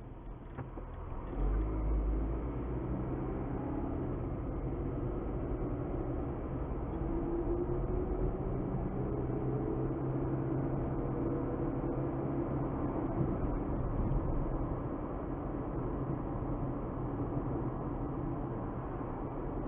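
A car's engine and tyre noise heard inside the cabin. The noise swells about a second and a half in as the car pulls away, then settles into steady driving, with an engine tone rising in pitch near the middle.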